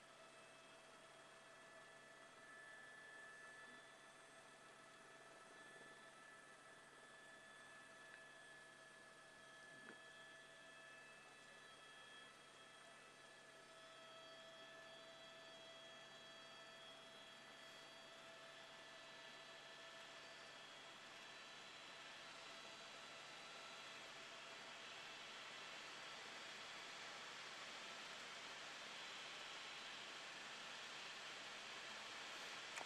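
Near silence: a faint steady hiss with a few faint steady tones, the hiss slowly rising a little toward the end.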